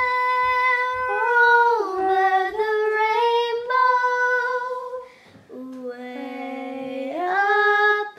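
A young girl singing unaccompanied, holding long notes and sliding between pitches, with a short break for breath about five seconds in.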